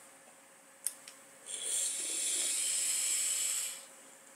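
A single click, then a steady hiss lasting a little over two seconds as a long hit is drawn through an e-cigarette tank, the air pulled through the coil and wick as it fires.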